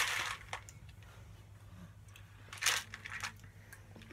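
A person chewing a candy-coated M&M, quiet scattered crunches with the loudest a short burst a little under three seconds in, over a faint steady low hum.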